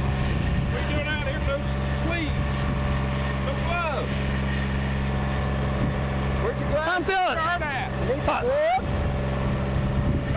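Engine of a crack-sealing rig running at a steady speed, a constant low hum, with voices talking over it in places.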